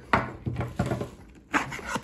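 Tools being handled in a nylon tool backpack: a few short rustles and knocks as a drywall saw is pulled out of its pocket, the loudest just after the start and again near the end.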